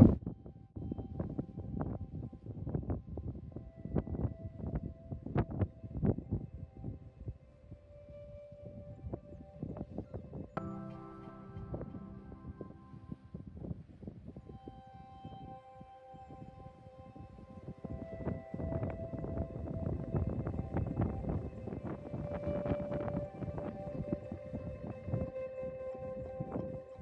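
Quiet background music of long held notes that shift chord now and then, over faint irregular knocks and rustles.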